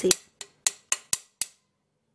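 A metal spoon clicking against the side of a small bowl while stirring a thick paste: five sharp clicks in about a second and a half.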